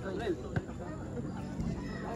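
Crowd of spectators chattering and calling out, with one sharp knock about half a second in.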